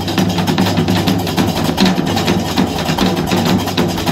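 A Moroccan folk troupe playing drums and hand percussion in a fast, even beat, over a sustained low tone.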